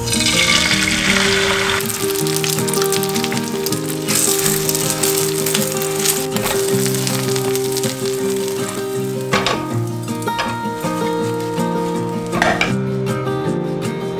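Beaten egg sizzling as it is poured into a hot rectangular nonstick pan, loudest in the first two seconds, then frying more quietly with two short louder bursts later on. Background music plays throughout.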